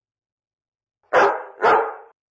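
A dog barks twice in quick succession, the barks about half a second apart, starting about a second in.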